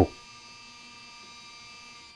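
Motorised cinema screen curtain track running as the curtains close across the screen: a faint, steady electric whine that stops near the end.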